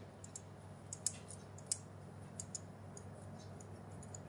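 Faint, scattered clicks and taps of tarot cards being handled, a few light ticks a second in the first three seconds, over a low steady hum.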